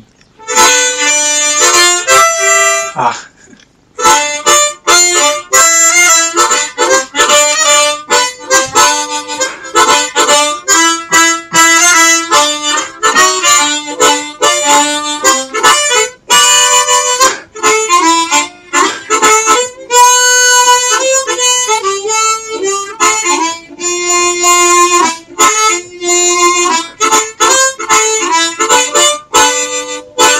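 Easttop T10-40 ten-hole chromatic harmonica being played: a short phrase, a brief pause about three seconds in, then a long run of quick notes mixed with held tones. Its tone is a little bright.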